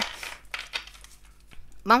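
A deck of oracle cards being handled in the hands: a brief papery rustle, then a few light taps of the cards.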